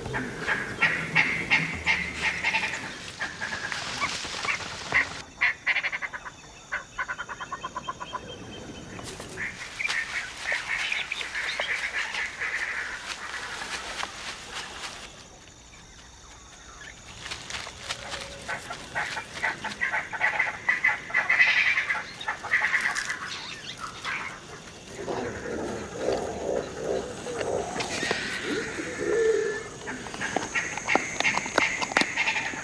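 Animal calls in repeated chattering bouts, with a quieter lull about halfway through and lower-pitched calls near the end.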